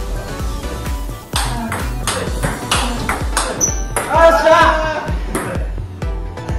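Table tennis ball hit back and forth in a forehand drive rally: a run of sharp clicks as the celluloid/plastic ball strikes the rubber of the bats and the table top. Background music plays throughout, and a voice is heard at about four seconds in.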